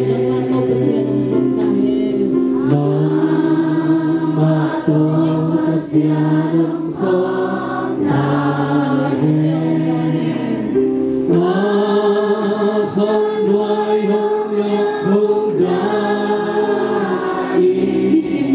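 A congregation of many voices singing a hymn together, in phrases of long held notes.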